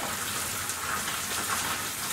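Light rain falling, a steady even hiss.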